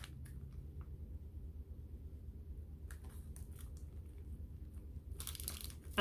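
Faint crinkling of a plastic bag holding a wax melt as it is handled and held to the nose, a few brief crackles about halfway through and again near the end, over a low steady hum.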